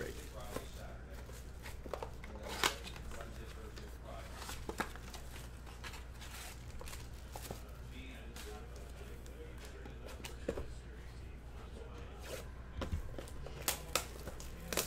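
Handling noise from trading-card blaster boxes and packs: plastic shrink-wrap crinkling, with scattered light clicks and taps as boxes and foil packs are picked up and set down. A steady low hum runs underneath.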